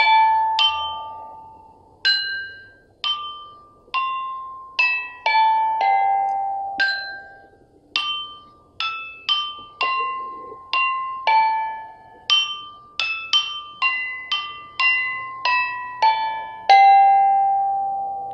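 A bianqing, a set of ancient Chinese stone chimes, struck one slab at a time with a mallet to play a slow melody: a couple dozen clear ringing notes, each with a sharp attack that dies away, the last note near the end left to ring the longest.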